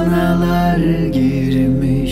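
Turkish lullaby sung slowly by a man over soft instrumental backing, the voice holding long notes and stepping down in pitch about a second in.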